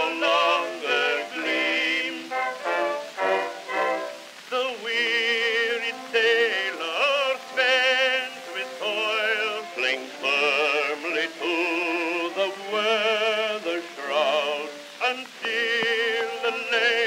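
Early acoustic recording on a 1910 Edison Amberol wax cylinder: male voices singing a sentimental sea-song duet in an operatic style with heavy vibrato. The sound is thin, with no low bass.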